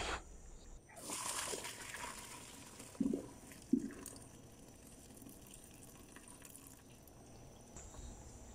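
Hot cooking water poured from a steel pot through a mesh strainer into a stainless steel sink, draining boiled cassia leaves: a faint splashing pour for about a second and a half, then two short knocks.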